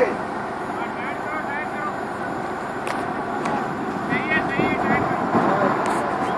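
Diesel engine of a large mobile crane running steadily during a heavy lift, with workers calling out in the distance and a couple of brief clicks.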